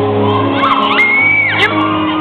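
Live piano playing in held notes, with audience screams over it: one high scream held for about half a second about a second in, among other shouts.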